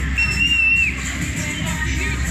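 Fairground ambience: loud amplified music from the rides with a low steady bass, and one high whistle note lasting under a second near the start, its pitch dipping slightly as it cuts off.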